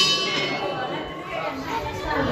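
A large brass temple bell struck once by hand, its bright metallic ring fading away over about a second.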